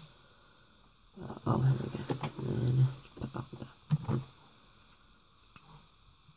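A man's voice making wordless sounds for about two seconds, then a few shorter ones, with light clicks of die-cast toy cars being handled on a wooden table near the end.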